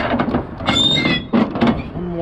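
Flatbed trailer strap winch being worked with a winch bar: a run of metal clicks and knocks, a short high squeal from the winch and bar a little before the middle, and two heavier knocks later on. The strap is already tight, so the winch gives little.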